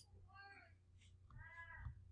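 Two faint meows from a cat: a short falling one about half a second in and a longer one that rises and falls near the end.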